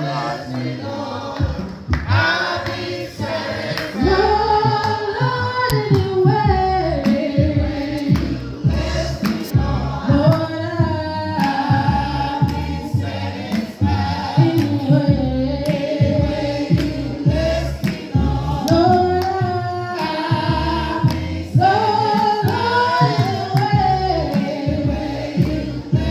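A congregation singing a gospel hymn together, with a mix of voices and women's voices prominent. Repeated low thumps run beneath the singing.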